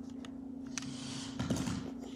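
Faint clicks from a small wheeled toy robot moving on a hardwood floor, with a soft low thump about one and a half seconds in as it flips. A steady low hum runs underneath.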